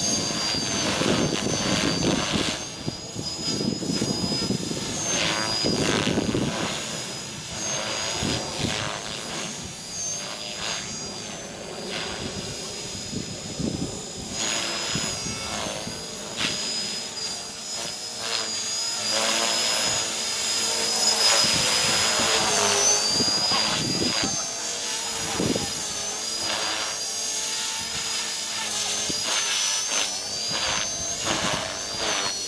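Radio-controlled model helicopter flying manoeuvres: a high, steady whine from its drive that dips briefly in pitch and recovers several times, over the whooshing of the rotor blades, which swells and fades as it turns.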